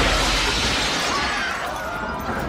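A large glass pane shattering: a sharp crash at the start, then a shower of falling glass that fades over about a second and a half.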